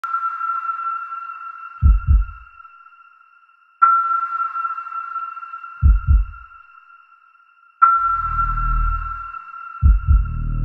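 Suspense trailer sound design: a high sonar-like ping struck three times, about four seconds apart, each fading away. Between the pings are low double thumps like a heartbeat, and a low rumble swells and fades near the end.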